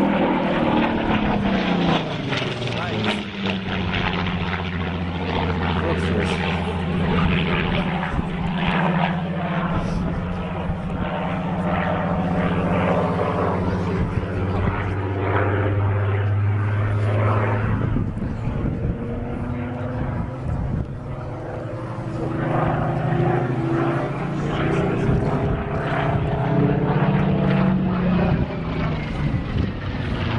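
Small single-engine propeller plane flying low overhead, its engine and propeller giving a steady drone. The pitch falls over the first two seconds, then rises and falls again in the second half as the plane passes.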